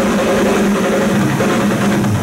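Live thrash-metal drum kit in a loud, continuous passage: a dense roll over a steady low tone, with few distinct kick-drum hits.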